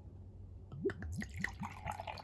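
Beer being poured from a brown glass bottle into a tall glass, starting about a second in. The bottle glugs about four times a second, each glug rising in pitch, over the splash of beer landing in the glass.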